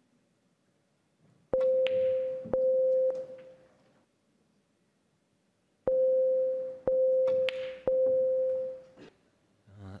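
Snooker Shoot-Out shot-clock warning beeps: two runs of about three steady electronic beeps, each about a second apart, the second run starting about six seconds in. They signal that the seconds left to play the shot are running out.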